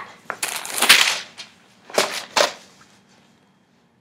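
Sheets of paper rustling and crackling as a stack of handwritten notes is snatched out of someone's hands: a burst of about a second, then two short rustles about two seconds in.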